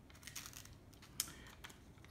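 Faint, crisp ticking and rustling of a very sharp knife edge pressing and slicing through a sheet of thin phone book paper, with one sharper tick about a second in. The blade slides a little rather than making a pure push cut.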